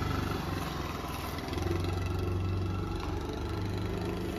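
Hero Destini 125 scooter's small single-cylinder engine running as the scooter pulls away and rides off, its note swelling for a while about a second and a half in.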